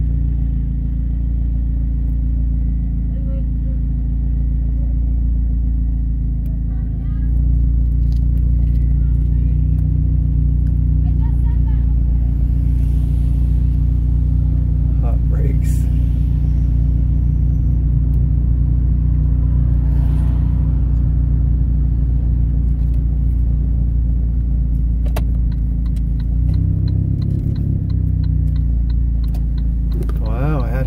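Steady low drone inside the cabin of a 2001 Saab 9-5 Aero rolling slowly in a low gear, its turbocharged four-cylinder engine and tyres heard from inside the car. The drone shifts briefly a few seconds before the end as the car pulls off.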